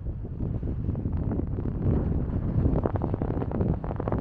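Wind buffeting the microphone: an uneven, gusty rumble.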